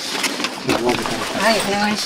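Speech: voices talking, with no other distinct sound standing out.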